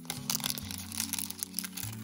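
Crinkly plastic wrapper packet being torn open and crumpled by hand, a dense run of quick crackles, over soft background music.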